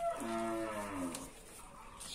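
A cow mooing once in the background: a single call of about a second that falls slowly in pitch.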